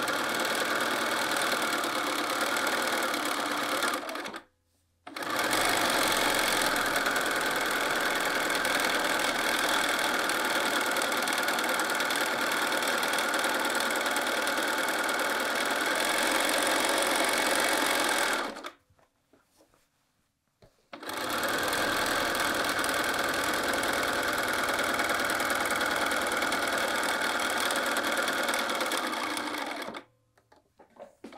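Bernina sewing machine running steadily as it stitches through the layers of a quilted jacket piece. It stops briefly about four seconds in and again for about two seconds past the middle, then runs on.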